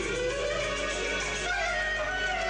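Clarinet playing a melody with pitch slides between notes.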